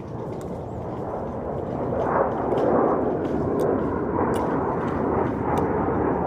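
An airplane flying low overhead. Its rushing engine noise swells about two seconds in and stays loud.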